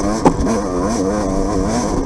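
Off-road dirt bike engine revving hard, its pitch rising and falling with the throttle as the rider races a sandy trail, with a single sharp knock about a quarter second in.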